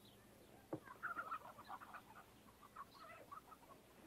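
Faint clucking of chickens: a scattering of short, irregular calls.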